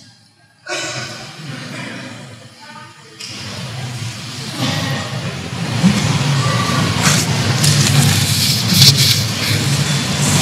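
A man blowing his nose into a tissue held close to the microphone: a noisy rush of air that builds through the second half, with sharp bursts near the end.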